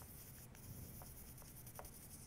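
Faint, soft brushing of a makeup blending brush rubbing pastel chalk into cardstock paper petals, with a few light ticks.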